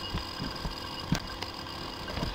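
Quiet background room noise with a faint steady hum and a few soft, dull low thumps, the clearest about a second in.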